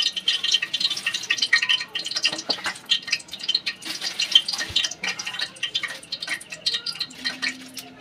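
A metal spoon scraping and clinking against a steel bowl as thick batter is scooped out and dropped into a plastic bag, with the bag crinkling as it is handled. Irregular small clicks and scrapes throughout.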